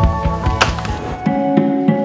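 Background music with a beat and a single sharp hit about half a second in; a little over a second in, the music changes to a different passage of held notes and the deep bass drops out.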